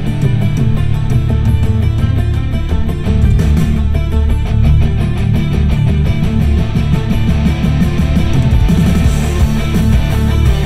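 Rock music with electric guitar and a strong low end, playing loud through the 2022 Mazda 3's 12-speaker Bose audio system, heard from the driver's seat inside the car's cabin.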